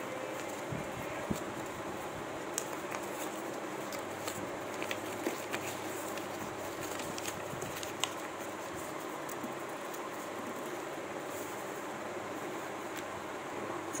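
A folded paper aeroplane being unfolded and pressed flat by hand: faint scattered crinkles and clicks of paper over a steady background hiss.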